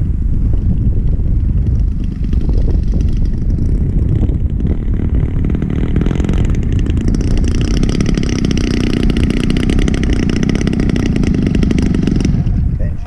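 Engine and propeller of a large radio-controlled aerobatic plane running at low throttle as it taxis in on the ground. The engine sound grows louder and clearer about six and a half seconds in as the plane nears.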